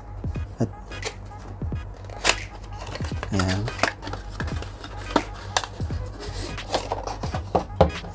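A cardboard watch box being handled and opened: a string of short clicks, taps and scrapes of paperboard as the box is turned over and its inner packaging slid out.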